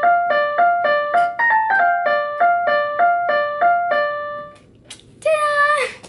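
A Casio electronic keyboard playing a short melody of single notes, about three notes a second, the same phrase heard twice; the playing stops about four and a half seconds in. Near the end a girl's voice sounds briefly, its pitch wavering.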